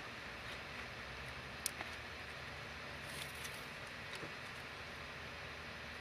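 Quiet steady room hiss with one faint click a little under two seconds in and a soft rustle around three seconds: fingers handling waxed linen cord as a knot is tied after a button.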